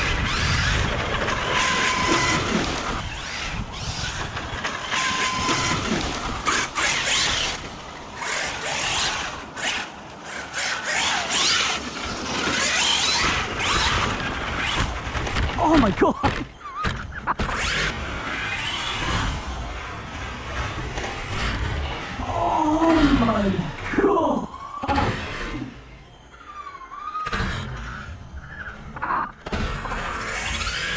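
Losi Super Baja Rey 2.0, a large brushless electric RC desert truck, driving hard on a dirt track. Its motor revs up and down with the throttle over a constant rush of tyre and dirt noise, with repeated knocks from bumps and landings, the heaviest about two-thirds of the way through.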